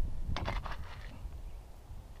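A small prospecting pick scraping and digging into stony, gravelly soil, with a few short scrapes about half a second in, over a low wind rumble on the microphone.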